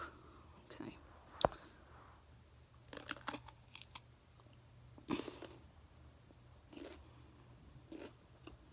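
A raw pepper being bitten with a few crisp crunches about three seconds in, then chewed. There is a single sharp click a little earlier.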